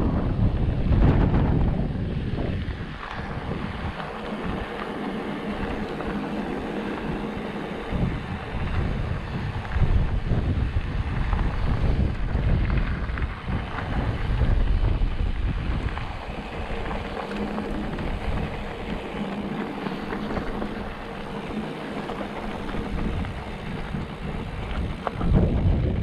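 Wind buffeting the microphone of a camera on a moving mountain bike, over the rumble of knobby tyres rolling on a loose dirt and gravel road. The noise rises and falls with the gusts and the speed.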